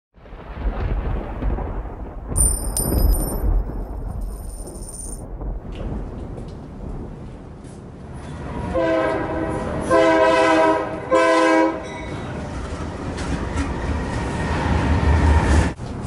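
Diesel freight train rumbling as it approaches, with the locomotive's horn sounding three short blasts about halfway through. A high thin whine sounds for a few seconds near the start, and the rumble grows louder near the end.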